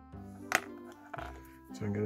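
Background music with plucked guitar, broken by one sharp tap about half a second in; a man's voice starts near the end.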